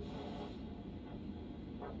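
Handheld vascular Doppler's speaker over the dorsalis pedis artery: a steady hiss with the whoosh of arterial blood flow at each heartbeat, one clear beat near the end, a strong, steady pulse.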